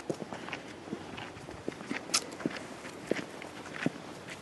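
Footsteps of several people walking on a forest trail: irregular soft steps and small crunches, with one sharper click about two seconds in.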